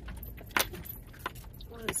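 Dodge Grand Caravan minivan driving slowly over a rutted dirt road, heard from inside the cabin: a low steady rumble of engine and tyres, with a few sharp clinks and rattles from loose items jolting, the loudest about half a second in.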